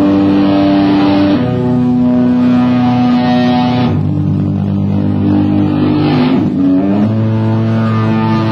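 Live rock band playing loudly, guitars holding sustained chords that change every second or two.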